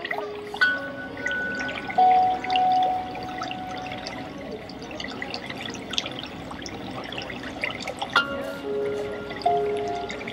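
Calm music of single struck notes that ring on for a second or two, with new notes about half a second in, at two seconds and twice near the end, over a constant scatter of small clicks.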